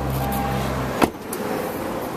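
A steady low hum, then a single sharp clunk about a second in from a latch on the Hyundai Santa Fe's body, after which the hum drops away.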